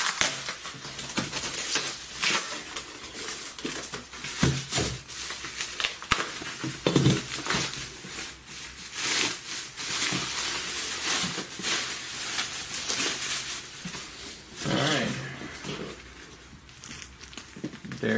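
Bubble wrap and plastic film crinkling and rustling as a wrapped bundle is cut open with a utility knife and the wrap is peeled away. It is a busy, uneven run of crackles throughout.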